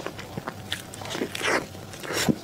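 Close-miked mouth sounds of a person biting and chewing a soft cream-filled crepe pastry: a run of irregular small clicks, with a longer, louder chewing noise about one and a half seconds in.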